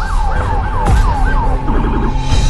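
Siren yelping fast, a falling wail repeated about four times a second over a steady tone, with two sharp downward swoops cutting through; it stops just before the end.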